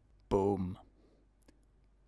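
A man's voice saying "boom" once, a short take that falls in pitch, followed by a faint mouth click.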